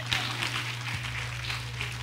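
A congregation applauding: many hands clapping in a steady patter, with a steady low hum underneath.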